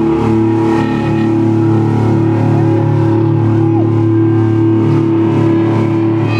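Amplified electric guitar and bass holding a steady, droning chord through their amps, with no drumbeat.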